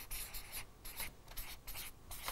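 Felt-tip marker writing on flip-chart paper: a quick series of short strokes, about a dozen in two seconds.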